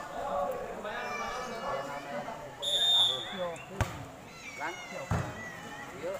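A referee's whistle blows once, briefly. About a second later a volleyball is struck hard on the serve, and another hit follows about a second after that as the ball is played, over spectators' voices and shouts.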